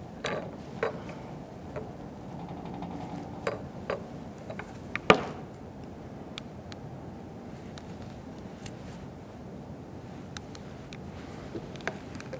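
Scattered light plastic clicks and knocks, the sharpest about five seconds in, from a hand-grip vacuum pump and its hose fitting being handled and connected to the end valve of a clear tube.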